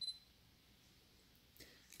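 A single short, high electronic beep from the Sony A7R III camera body at the very start, then near silence.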